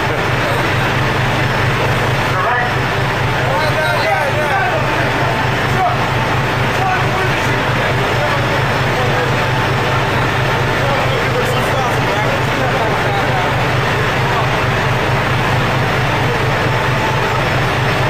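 Steady low drone of a fishing boat's engine, with indistinct voices over it in places.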